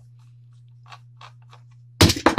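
Faint handling noises, a few soft clicks and rustles, as a plastic clamp meter and a Phillips screwdriver are picked up and moved, over a steady low hum.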